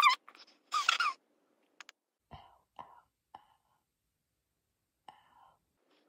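A young woman's short, breathy whimpers of pain in the first second, as an earring hurts going into her ear. Then a few faint, brief ticks and breaths.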